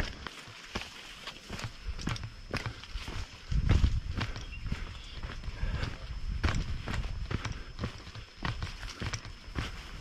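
Footsteps of a hiker walking on a dirt forest trail, a run of uneven crunching steps, with a louder low bump about three and a half seconds in.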